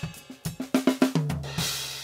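Played-back recording of an acoustic drum kit: a run of snare and kick hits, then a quick fill down the toms from higher to lower a little past a second in, and a crash cymbal ringing out near the end.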